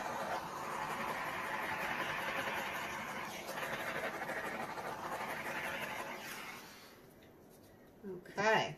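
Small handheld butane torch flame hissing steadily as it is swept over freshly poured epoxy resin to pop surface bubbles. The torch cuts out about seven seconds in.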